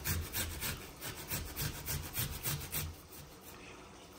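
A small flat metal hand grater rasping as a piece of root is rubbed back and forth across it, about three strokes a second, stopping about three seconds in.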